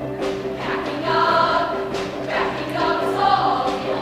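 Mixed show choir singing in full voice with an instrumental backing, with regular percussion hits under the voices.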